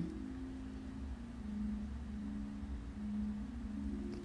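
Faint low steady hum with a few soft held tones that swell and fade.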